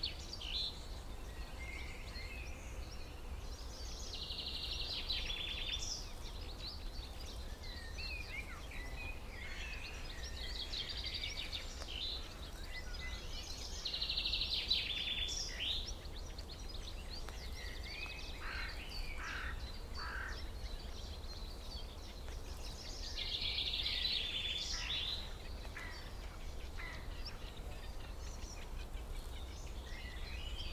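Small birds singing: high chirps and rapid trills come in phrases every few seconds, over a steady low rumble.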